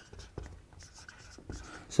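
Marker pen writing on a whiteboard in a few short strokes.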